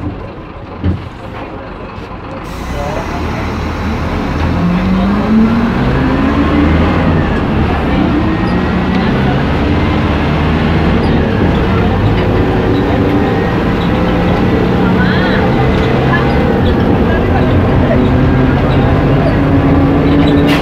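City bus engine and drivetrain heard from inside the passenger cabin as the bus pulls away. It grows louder about three seconds in and rises in pitch as it speeds up, then runs on steadily. There is a short knock about a second in.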